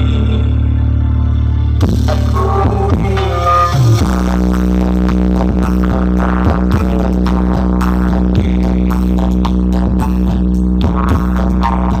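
Loud music with heavy, deep bass played through ME Audio's truck-mounted sound system of stacked speaker cabinets. About four seconds in, the track changes from a melodic phrase to a steady booming bass under a regular beat.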